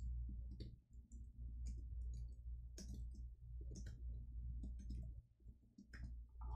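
Computer keyboard being typed on: irregular clusters of key clicks, over a steady low hum.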